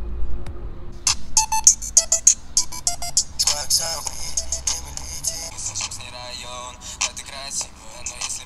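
Music playing through a SVEN PS-95 mini Bluetooth speaker whose driver is still sucked fully inward after ten minutes under water. The music starts about a second in, with sharp, busy strokes.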